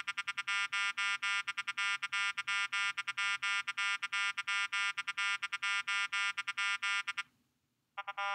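Synthetic harmonic complex tones (timbre-tone stimuli, fundamental held constant) beeping in a pseudo-random Morse-code-like rhythm of short and long tones, all of one pitch and timbre. The sequence stops about seven seconds in. A new, duller-sounding tone sequence starts right at the end.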